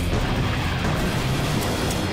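Film-trailer soundtrack: a steady low rumble with music underneath.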